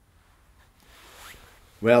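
A faint, soft hiss swells and fades over about a second, then a man starts speaking.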